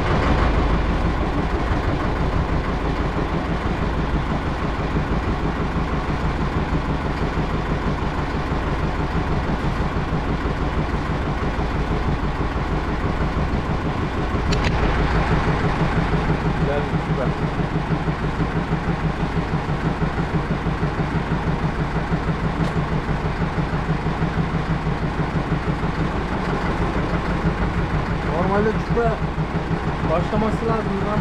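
A small fishing boat's engine idling steadily with a fast, even throb. A single sharp click comes about halfway through, and the engine runs a little louder for several seconds after it.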